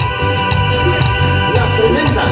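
Live band music through the stage sound system: an instrumental vamp with a bass line moving under held chords.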